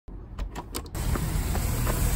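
Keys clicking and jingling in a door lock: a few short, sharp clicks. About a second in, a loud, steady outdoor rushing noise, wind on the microphone, takes over.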